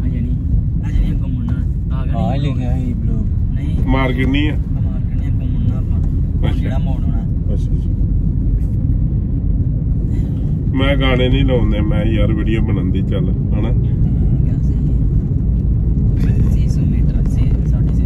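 Steady low rumble of a car driving, heard from inside the cabin, with voices talking on and off over it.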